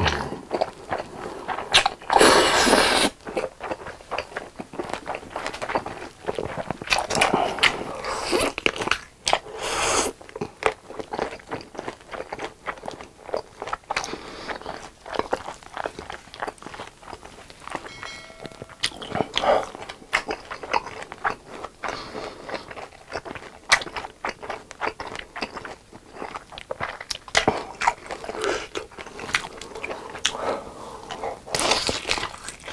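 Close-miked eating: noodles slurped and chewed with wet mouth clicks and lip smacks, with louder slurps about two to three seconds in and again about ten seconds in. Later, biting and chewing of noodles and sausage.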